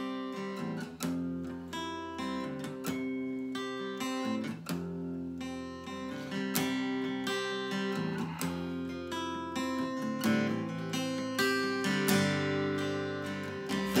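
Solo acoustic guitar playing a slow country intro, with chords picked and left ringing.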